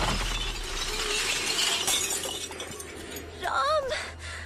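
Glass shattering from a smashed television set, the crash trailing off into a fading high hiss of falling fragments. A short wavering cry from a voice comes near the end.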